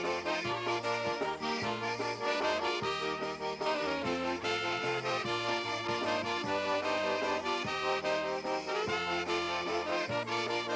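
Polka band playing an instrumental passage: piano accordion leading, with trumpet and saxophone, over a moving bass line and a steady drum beat.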